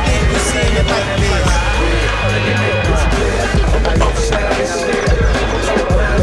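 Skateboard wheels rolling on concrete, with a few sharp clacks of the board, under loud music with a heavy bass line.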